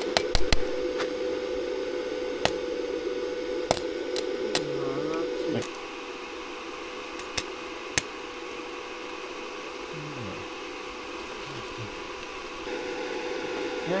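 Stick welder run from a portable battery power station, striking an arc on steel rebar: a steady hum with sharp crackles and pops from the arc. About six seconds in, the hum drops away and the sound gets quieter, with scattered pops continuing. The power station cannot supply the welder's current continuously, so the arc keeps breaking.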